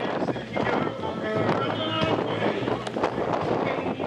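Live reggae band playing through a large outdoor PA, heard from within the audience, with a steady bass line and the singer's voice between sung lines.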